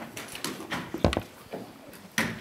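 A few scattered clicks and knocks from things being handled at a table, the loudest a dull thump about a second in.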